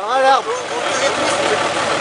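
Off-road 4x4's engine running steadily at low throttle as the vehicle crawls through deep mud, with a short shouted word right at the start.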